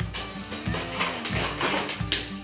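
Background music with a steady beat: regular bass thumps about twice a second under a melody and sharp percussion ticks.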